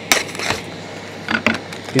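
Knife cutting into the plastic film lid of a supermarket tray of raw chicken wings, the plastic crackling in a few short, sharp bursts: one just after the start, another around half a second, and a pair near the end.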